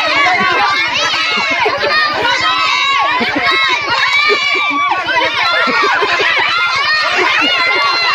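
A group of children calling out and shouting at once, many high voices overlapping without a break.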